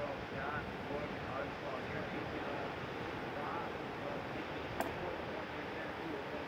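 Steady outdoor wind and surf noise with faint, indistinct voices of people talking in the background. A single sharp click comes near the end.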